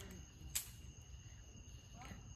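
Quiet room tone with a faint steady high whine, and one short light click about half a second in as a small cardboard lipstick box is handled and opened.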